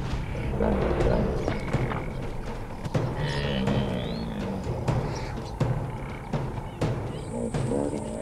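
Bull hippos bellowing and grunting at each other as they square up to fight, with low, drawn-out calls that bend in pitch, over documentary music.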